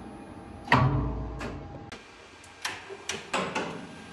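Elevator traction machine's electromagnetic brake clacking shut with a sharp knock under a second in, followed by a low rumble that fades over about a second. A few lighter clicks follow near the end.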